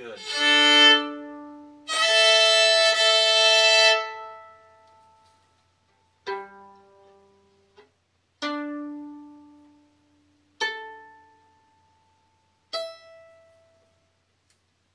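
Lorenz violin bowed in two sustained double stops, each a pair of notes held together, the second held for about two seconds. Then the open strings are plucked one at a time, four plucks from the lowest string to the highest, each ringing out and dying away.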